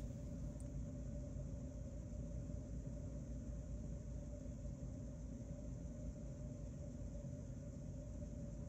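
Heavy rain heard from inside a room: a steady, muffled rumble and hiss that does not let up.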